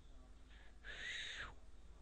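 A person's breath near the microphone: one short, airy exhale about a second in, otherwise quiet room tone.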